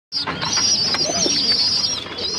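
Birds calling: a high, wavering trill that holds without a break, with a short lower call about a second in.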